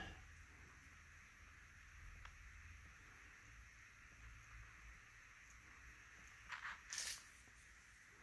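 Near silence: room tone, with a couple of faint, brief rustling sounds near the end.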